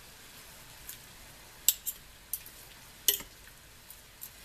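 Metal forks pulling apart tender slow-cooked pork in a slow cooker, with three sharp clinks of the forks against metal or the pot spread through, and soft scraping between.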